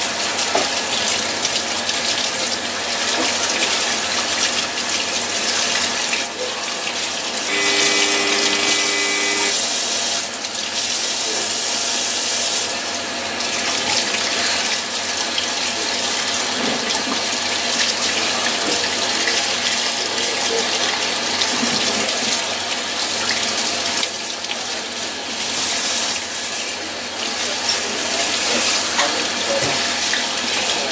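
Kitchen faucet running steadily into a stainless steel sink, the stream splashing over a piece of raw bonito as hands rinse the blood from it. A short steady tone sounds for about two seconds around a third of the way in.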